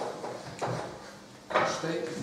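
Chalk on a blackboard: a few short scraping strokes of writing, the loudest about one and a half seconds in.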